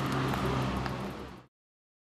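Outdoor street ambience with a steady low hum like a car engine running, fading out about one and a half seconds in and then cut to silence.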